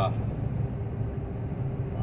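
Steady drone of a truck's engine and road noise heard inside the cab while cruising on a highway.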